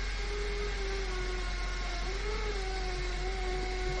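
A man's voice holding one long, steady note, wavering slightly about halfway through, over a faint steady whine and hum.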